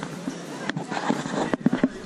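Busy pedestrian street ambience with indistinct voices, broken by a sharp knock just under a second in and a quick run of three louder knocks near the end.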